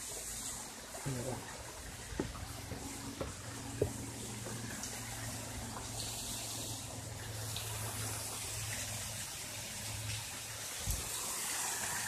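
Steady hiss of water from a small waterfall and stream, with a few faint knocks in the first few seconds.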